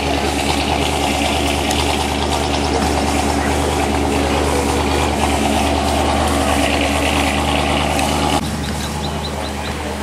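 Car engine idling steadily, a constant low running note. About eight seconds in the level drops abruptly to a quieter background.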